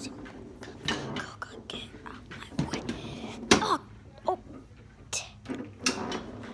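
Foosball game in play: a handful of sharp, separate knocks and clacks from the ball and the rod-mounted players striking inside the table. Brief grunts and murmured voice sounds come between them.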